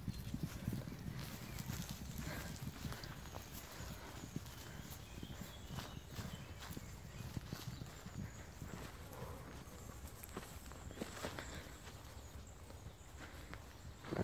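Faint, irregular hoofbeats of horses moving over grass pasture, heard as scattered soft knocks and clicks, over a low rumble that fades about two seconds in.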